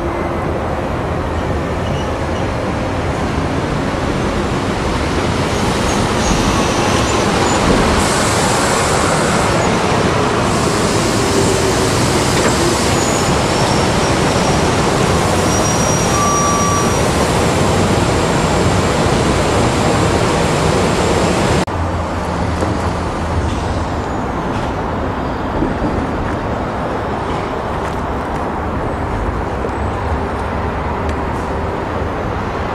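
Stainless-steel electric passenger train passing close by on the rails: a loud, steady rush of wheel and rail noise that drops off suddenly about two-thirds of the way through, leaving a quieter rumble.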